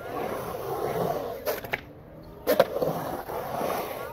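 Skateboard wheels rolling on the concrete bowl, a steady rolling roar that rises and falls as the skater carves, broken by a few sharp clacks, the loudest about two and a half seconds in.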